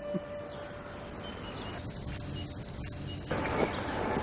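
Insects chirring in a continuous high-pitched buzz, a little louder for a second or so mid-way.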